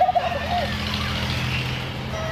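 Fairground din: a steady low hum under a haze of mixed crowd and ride noise, with a wavering, voice-like tone over it for about the first half-second.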